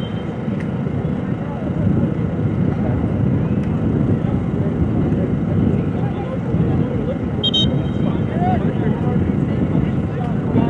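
Outdoor soccer match ambience: wind rumbling on the microphone under faint distant shouts of players and coaches. About seven and a half seconds in there is one short, high blast of a referee's whistle as play stands for a free kick.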